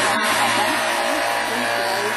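A racing touring car's engine running steadily under a constant hiss, with no clear rise or fall in pitch.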